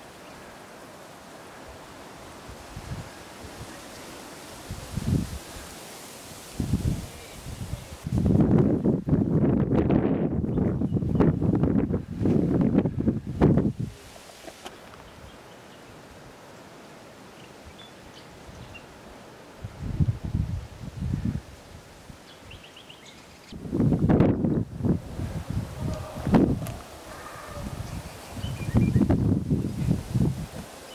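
Gusts of wind buffeting the microphone in loud, rumbling bursts lasting a few seconds each, the longest about eight seconds in, with leaves of surrounding shrubs rustling. The air is quieter and steady between gusts.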